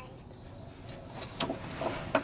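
Quiet outdoor background with faint bird calls and a single sharp click about one and a half seconds in.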